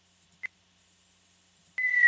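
Near silence broken by one short beep, then near the end a loud whistle tone starts and slides slowly down in pitch: the opening of a falling-whistle sound effect in a radio station jingle.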